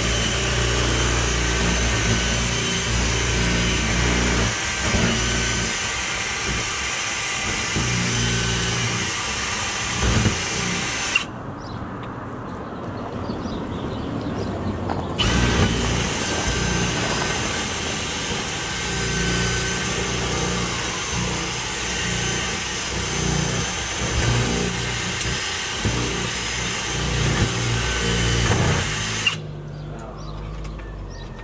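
Power drill running steadily as it drills out a locked door's lock cylinder, pausing for a few seconds about eleven seconds in, then running again until shortly before the end.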